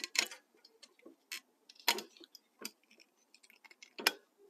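Small irregular clicks and ticks of a halogen bulb and its wire retaining clip being worked by hand into the plastic bulb socket of a motorcycle headlight, a few sharper clicks among fainter ticks, the loudest about two seconds in. The fiddly clicking is the clip being worked to lock the bulb in place, a job that takes a little practice.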